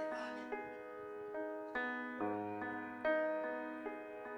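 Grand piano playing a slow, gentle introduction: chords and notes struck about every half second, each left to ring and fade.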